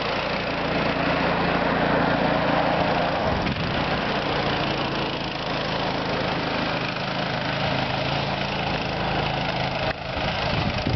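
Go-kart's small engine running steadily, its note changing about three and a half seconds in.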